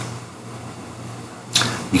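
A pause in a man's speech, filled with a steady low electrical hum and faint background hiss; his voice comes back shortly before the end.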